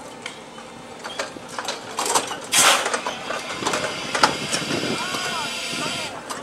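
Giant mechanical street-theatre dragon working, with an engine running under scattered clicks and clanks. About two and a half seconds in there is a short, loud burst of hiss, and near the end a few brief squeaks.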